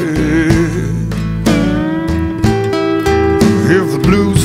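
Live blues band playing a slow passage between sung lines: strummed acoustic guitar, electric bass and drums, with gliding lap steel slide notes.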